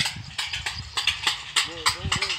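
Metal thali plates being beaten to scare off a locust swarm: a run of sharp clanging strikes, about three a second, with a person shouting near the end.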